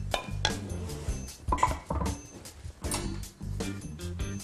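A metal spoon clinking several times against a pan as sauce is spooned out onto a plate, over background music.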